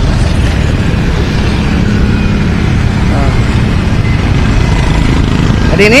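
Wind buffeting the microphone of a moving open pedicab, a loud, choppy low rumble, over street traffic with motorcycle engines passing.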